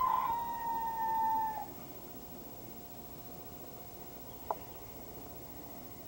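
An animal's long call: one loud held note lasting about a second and a half, falling off at the end. A single sharp click follows a few seconds later.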